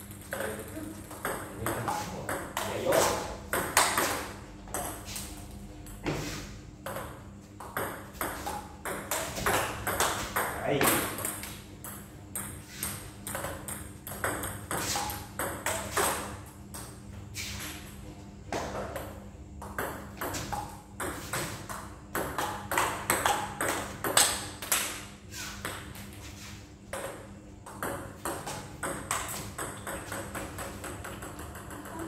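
Table tennis ball clicking sharply and repeatedly off rubber paddles and the table as serves, here backspin serves, are played and returned, many hits at uneven spacing.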